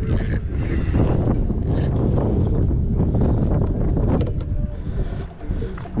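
Wind buffeting an action camera's microphone, a loud steady low rumble. Two brief high-pitched sounds cut through it, one right at the start and one just under two seconds in.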